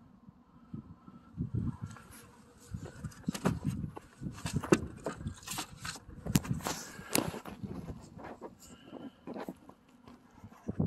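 Phone handling noise: irregular rustling and sharp clicks as the phone brushes against a jacket, busiest in the middle stretch.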